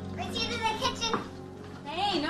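A child's voice, high-pitched and with no clear words, over soft film score that fades out partway through.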